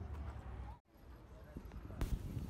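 Faint outdoor ambience of people walking on a paved park avenue: a low wind rumble on the microphone, distant voices and scattered footsteps. The sound cuts out to silence for a moment a little under a second in, then the faint ambience comes back.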